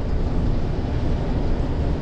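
A bus travelling at steady speed, heard from inside the cabin: a continuous low rumble of tyres and drivetrain with no sudden events.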